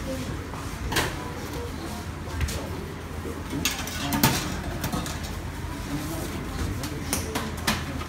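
Restaurant counter ambience: voices talking in the background over a steady low hum, with several short sharp clinks of dishes and trays.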